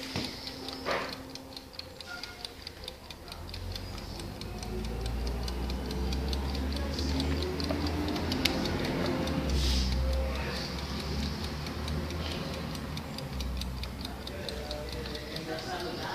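Clockwork timer of a Zoppas Florence exercise bike running, ticking steadily at about four ticks a second. A low rumble sits under the ticking through most of the middle.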